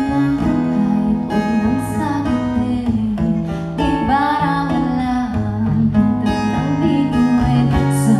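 Acoustic guitar playing a gentle song, with a woman's singing voice joining around four seconds in and again near the end.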